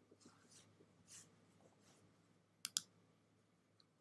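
Near silence with a faint low hum, broken about two and a half seconds in by two quick sharp clicks in rapid succession, like a computer mouse double-click.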